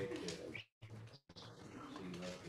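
A faint, murmured human voice, cut off briefly by a dropout in the audio.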